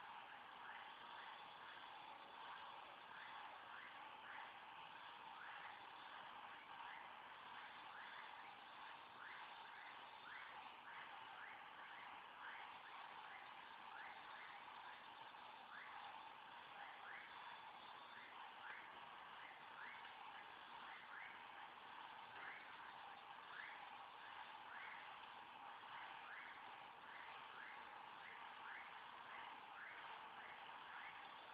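Near silence: a faint hiss with small, short rising chirps from a calling animal, repeating about twice a second.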